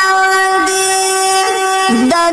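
A sung voice holding one long, steady note in a Pashto tarana, with small slides in pitch about half a second in and again near the end.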